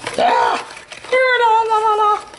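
A high-pitched voice making two wordless sounds: a short rise-and-fall, then a longer held note sliding slightly down.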